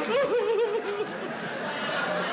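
Studio audience laughing, with one laugh rising above the rest in quick pulses during the first second.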